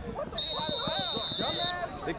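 A referee's whistle blown once, a steady high tone lasting a little over a second, over people's voices on the field.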